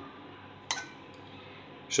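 A single clink of a metal serving spoon against a plate about two-thirds of a second in, with a short ring.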